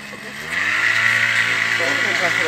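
A motor vehicle engine revving up about half a second in: its pitch rises briefly, then holds steady and loud. Voices talk over it near the end.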